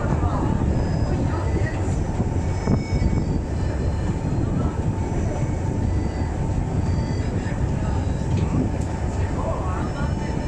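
Monte Generoso rack railway carriage running along the track, heard from inside: a steady, loud low rumble with faint high whining tones above it.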